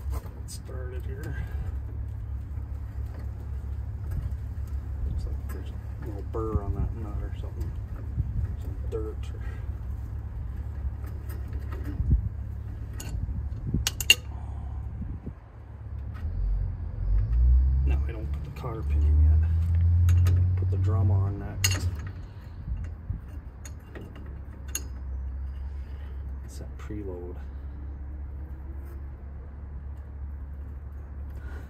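Sharp metal clicks and clinks of an adjustable wrench, nut and washer being fitted on a car's front wheel spindle, over a steady low rumble that swells louder for several seconds past the middle.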